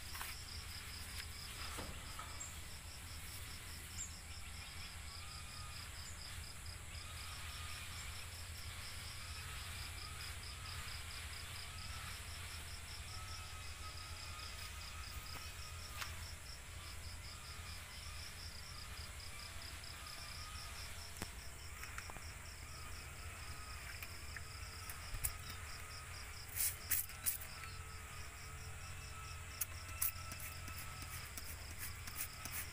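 An insect chirping steadily in a high-pitched, rapid, even pulsing trill over a low background hum, with a few sharp clicks near the end.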